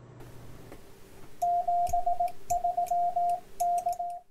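Morse code sent as a single steady beep tone, keyed in short and long elements in three groups, starting about one and a half seconds in.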